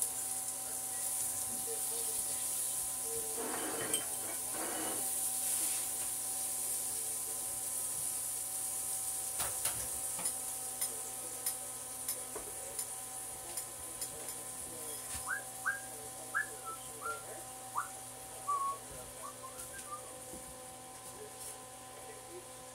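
Food sizzling as it cooks: a steady high hiss over a faint steady hum. A few clicks come around the middle, and short rising chirps come in the later part.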